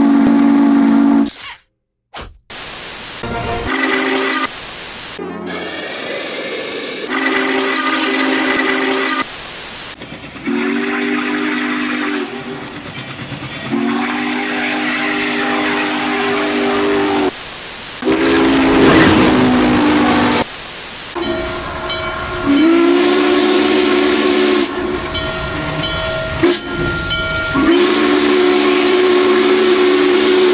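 Norfolk & Western #611's chime steam whistle blowing about eight blasts of one steady chord, some short and some held for two or three seconds, with steam hiss between them. The sound jumps abruptly from clip to clip.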